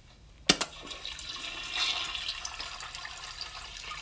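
A toilet flushing: a sharp click of the flush handle about half a second in, then a steady rush of water.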